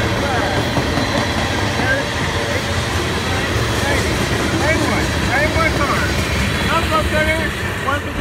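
Freight train rolling past, a steady loud rumble and clatter of tank cars' wheels on the rails, with the rear of the train going by near the end.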